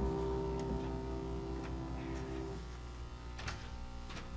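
Final held chord of a piano ringing and dying away, gone a little past halfway through, followed by a few faint clicks.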